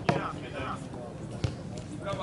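Two sharp thuds of a football being struck, the louder one at the start and a second about a second and a half later, with players' voices shouting.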